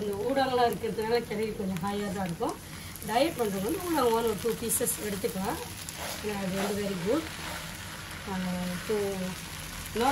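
Fried flat noodles (pan mee) with prawns and bean sprouts sizzling in a nonstick wok as a spatula tosses and stirs them. A voice carries on over the frying, at times louder than it.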